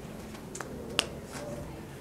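A single sharp click about a second in, with a few fainter ticks before and after it, over quiet room tone.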